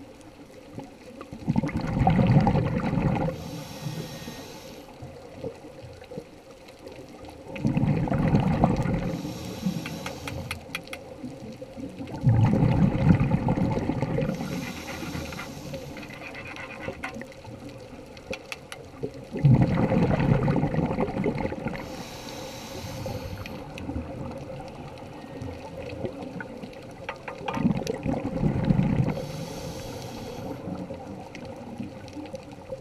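Scuba diver breathing through a demand regulator underwater. Five breaths, one about every six seconds: each is a loud bubbling rumble of exhaled air, followed by a shorter, fainter hiss as the next breath is drawn.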